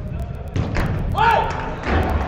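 Indoor five-a-side football in play: dull thuds of the ball being kicked and players calling out, with one loud shout about a second in.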